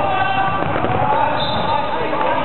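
Basketball being dribbled on a hardwood court during a game, with players' voices calling out over the general noise of a large sports hall.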